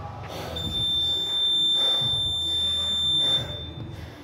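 Gym workout timer's electronic buzzer: one long, steady, high-pitched beep that starts about half a second in and holds for about three seconds, sounding as the count-up clock reaches 12:00, the end of the timed workout.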